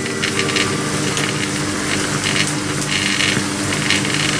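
Steenbeck flatbed editing table running 35 mm film: a steady hum and whir from its motor and film transport.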